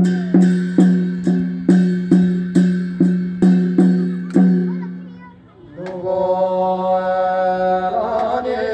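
Folk music: a plucked string instrument strikes the same low ringing note about twice a second, ten times or so, and lets it fade. Near six seconds a long held note with a rich, steady sound begins.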